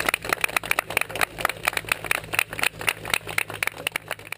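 A group of people clapping, many uneven claps, over a steady low drone.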